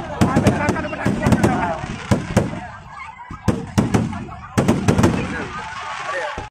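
Aerial fireworks bursting overhead: many sharp bangs in quick, irregular succession, thinning briefly around the middle before a fresh cluster.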